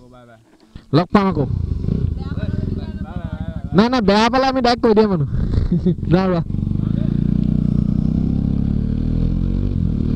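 Motorcycle engine starting about a second in and idling with an even low pulse under voices. Past the middle it settles into a steady, louder run as the bike rides off.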